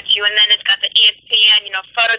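A woman speaking over a telephone line, her voice thin and narrow as phone audio is.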